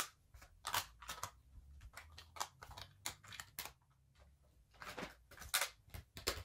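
Plastic makeup packaging (tubes, compacts, pencils) clicking and knocking as it is picked up, handled and dropped into plastic organizer trays: a string of short, irregular clatters, the loudest a little before the end.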